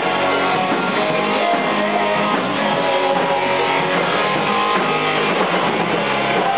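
Live rock and roll band playing, electric guitar through a small amp to the fore, in a stretch without singing.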